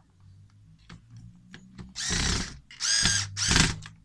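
Electric screwdriver driving a small screw into the fuser unit of a Ricoh Aficio MP copier to secure the gate plate, in three short runs of the motor from about two seconds in. A few faint clicks come before.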